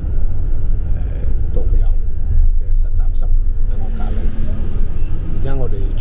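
Tour coach driving, heard from inside the passenger cabin: a loud, steady low rumble of engine and road noise.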